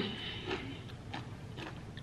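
Faint chewing of a mouthful of pickle, with a few soft short clicks spaced about half a second apart.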